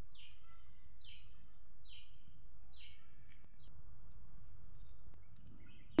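A bird calling, five short high notes that each fall in pitch, about one a second, stopping about four seconds in, over a steady low background hum.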